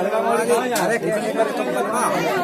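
Speech only: a man talking with other voices overlapping.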